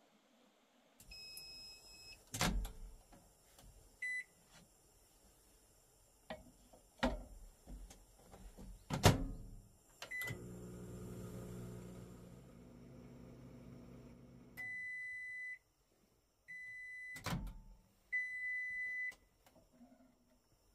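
A compact PLANT microwave oven in use: a few knocks of its door and short beeps from its keypad, then the oven running with a steady hum for about four seconds, followed by three long beeps signalling the end of the heating cycle, with a knock of the door between them.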